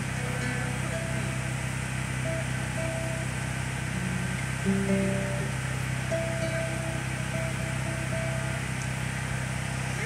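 Acoustic guitar played quietly as single notes here and there, as when being tuned between songs, over a steady low hum.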